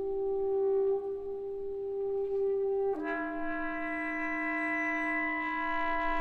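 Symphony orchestra holding sustained chords; about three seconds in, a new, fuller chord enters with a sharp attack and is held.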